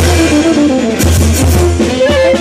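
Military brass band playing a Latin-style tune: trumpets carry held melody notes over a steady bass and drums, with hand-cymbal crashes at the start and again about a second in.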